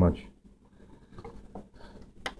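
Faint, scattered small clicks and light scraping as LED bulbs are handled and moved about on a countertop.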